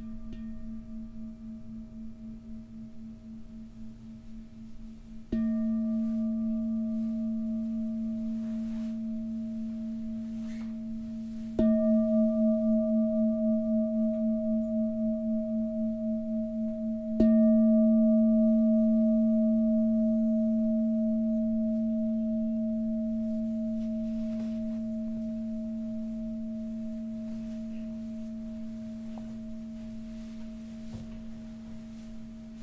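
A large singing bowl struck with a beater three times, about six seconds apart, over the ringing of an earlier stroke. Each stroke gives a deep, wavering ring that dies away slowly, and the last one is left to fade.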